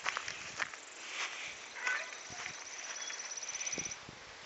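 A high, rapid animal trill of many evenly spaced notes, starting about two seconds in and running on steadily. It sits over outdoor hiss, with scattered sharp clicks and rustles from the handheld microphone in the first two seconds.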